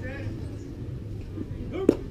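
A pitched baseball smacking into a catcher's mitt once, a sharp pop near the end, over a low hum of spectators' voices.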